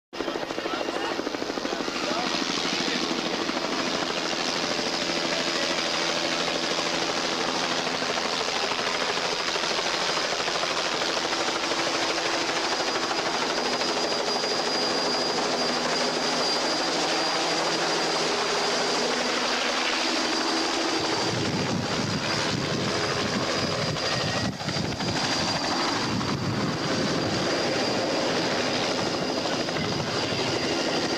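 Helicopter flying, its rotor and engine running steadily; about 21 s in the sound changes and deepens, with more low rumble.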